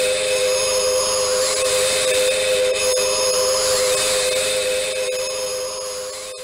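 A steady electronic drone, one held mid tone, with higher shimmering tones that sweep up and back down about every two seconds. It begins to fade near the end.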